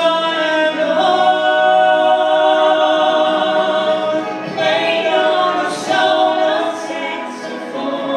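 A man and a woman singing a musical-theatre duet through microphones, holding long notes with short breaths between phrases.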